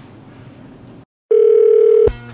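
Faint room hiss that cuts off about a second in, then after a brief silence a loud, steady electronic beep: one held mid-pitched tone lasting under a second.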